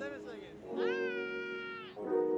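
Lo-fi background music with steady piano-like chords. Over it comes a short high call, then a longer high-pitched call that rises and is held for about a second.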